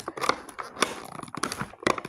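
Clear plastic packaging crinkling in the hands as it is pulled at, a run of irregular sharp crackles with the loudest one near the end.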